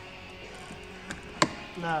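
A sharp plastic click about one and a half seconds in, with a smaller click just before it, as a plastic pry tool levers the door-pull trim of a 2017 BMW 530 free from its clips.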